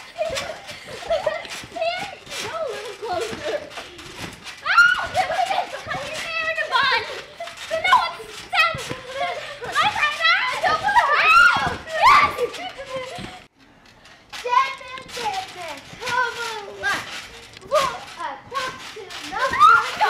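Young girls shouting, squealing and laughing as they bounce on a trampoline, with the thuds of landings on the mat mixed in. The voices drop away briefly about two-thirds of the way through.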